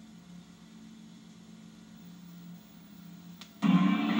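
Faint steady low hum with little else. A click comes near the end, and then the sound cuts abruptly to much louder audio.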